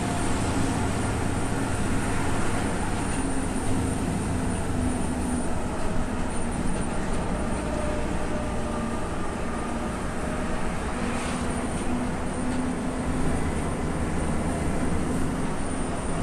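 Steady drone of a Renault truck's diesel engine and tyre noise heard from inside the cab while cruising at about 60–70 km/h on the highway.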